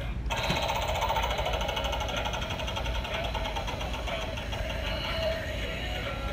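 Animated Mystic Wheel Halloween prop playing its spinning-wheel sound effect through its small speaker: a rapid, even clicking like a prize wheel turning, which starts suddenly a moment in and runs on steadily.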